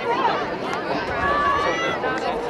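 Several voices calling out and chattering at once over crowd noise: players and onlookers shouting during play.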